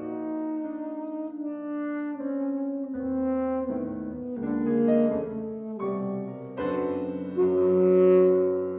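Alto saxophone playing a line of sustained, held notes over piano accompaniment. Deep piano notes come in about three seconds in and again near the end, where the music swells.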